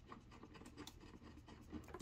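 Near silence with faint scratching and small ticks of fingers threading antenna cable connectors onto a cellular modem's threaded ports.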